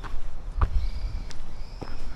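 Footsteps of a person walking at a steady pace, a step a little under every second half-second or so, each a dull thud.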